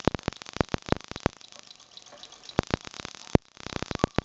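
Sparks snapping across the gap between the brass discharge spheres of an 1890 Wimshurst electrostatic machine as it is cranked: rapid, irregular sharp snaps, several a second, thinning out for about a second midway before picking up again.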